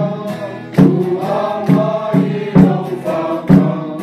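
A small group singing a hymn in unison from song sheets, with a hand-held drum struck once with a stick about every second to keep the beat.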